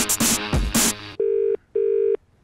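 A brief burst of loud music, then a telephone ringing tone heard down the line: one double ring of the British kind, two short steady buzzing tones with a short gap between them, as the call to the showroom is put through.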